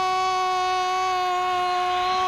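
A man's voice holding one long, steady sung note at a single pitch.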